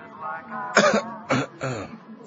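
A man clearing his throat and then coughing three times, starting about a second in.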